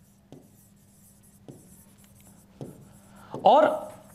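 A pen writing on a board: faint scratching strokes with a few light taps as the letters are drawn.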